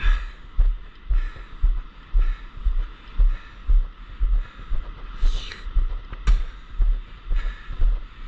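Regular low thumps about twice a second, at a walking rhythm, over a steady hiss: a rig-mounted camera jolted with each step as it is carried across the sand.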